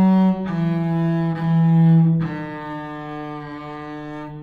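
Bowed double bass playing a shifting exercise on the D and G strings. The note changes about half a second in and again at about two seconds, and that last note is held long, fading away.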